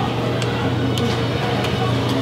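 Steady low electrical hum from a snack vending machine, with a few faint clicks.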